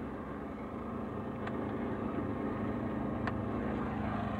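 Two faint, sharp clicks, about a second and a half and three seconds in, as power switches on a video player in the back of a car are flipped on, over a steady low hum.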